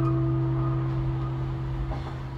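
Guitars holding a closing chord that rings on, a steady low note and a higher note slowly fading.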